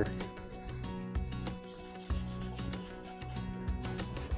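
A cloth rag rubbing over a painted wooden desk panel, wiping off chalk paint that is still wet.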